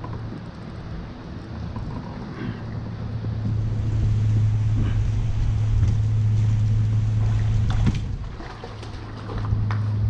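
A steady low motor drone, loudest in the middle and dipping for a moment about eight seconds in. Near the end, water splashes as a fish is scooped up in a landing net.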